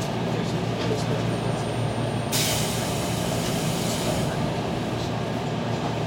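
Nishitetsu electric train standing at a station platform, heard from inside the car: a steady low hum of its onboard equipment, with a hiss of compressed air lasting about two seconds from a little past two seconds in.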